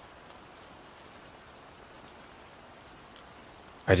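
Steady rain: an even patter with a few faint drop ticks, low and unchanging.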